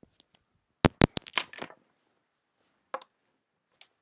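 Handling noise from the recording device being moved: a quick run of sharp knocks and clicks about a second in, then a single click near three seconds and a few faint ticks.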